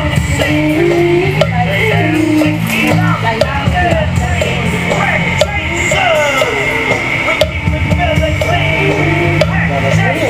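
Rock track with guitar, bass and drums playing, and a voice singing over it.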